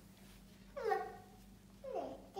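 A toddler's short, high-pitched wordless vocal sound about a second in, with another starting near the end.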